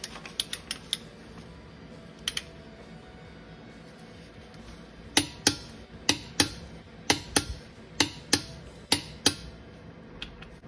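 Click-type torque wrench tightening a Jeep Compass's wheel lug nuts to 100 ft-lb. A few light clicks come first, then from about halfway sharp double clicks about once a second as the wrench reaches its set torque on each pull.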